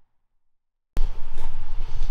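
Dead silence for about a second, then an abrupt cut into a steady low background hum.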